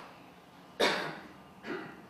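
A man coughs twice: a louder cough about a second in and a softer one near the end.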